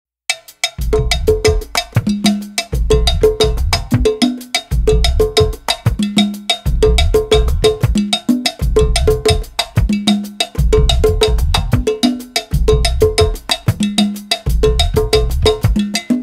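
Instrumental percussion intro of an Afro-fusion track in 6/8: a tight groove of bell and drum strokes over deep low notes, the figure repeating about every two seconds.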